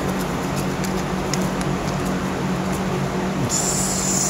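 Steady low room hum with a constant drone, with faint crinkles of capacitor aluminium foil and paper strips being handled, and a brief rustle near the end.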